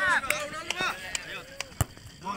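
Onlookers' voices, then a single sharp thud of a football being struck for a penalty kick near the end.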